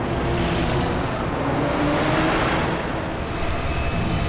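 Cartoon spaceship sound effect as the ship flies past: a rushing whoosh over a low engine rumble, swelling to a peak about halfway through and then easing.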